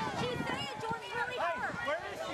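Several high-pitched voices of children and adults calling out and talking over one another, distressed, with no single clear speaker.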